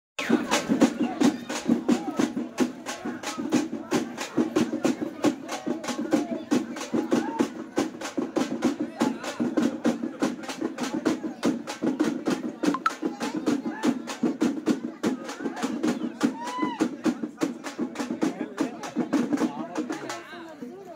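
Drums beaten in a fast, steady beat for a street procession, with crowd voices underneath.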